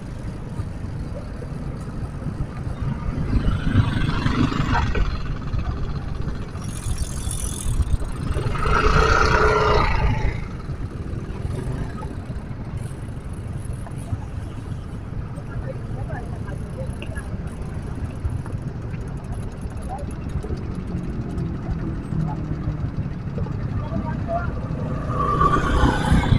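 Street traffic: a steady low rumble of engines, with two louder vehicles passing about four and nine seconds in.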